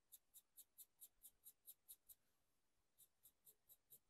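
Faint, quick strokes of a small artist's brush dry-brushing paint along a furniture edge, about five scratchy strokes a second, pausing for about a second midway.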